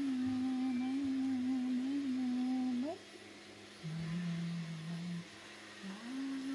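A woman humming softly to a baby: a long held note that wavers a little and ends in a quick upward slide, then after a pause a shorter, lower held note.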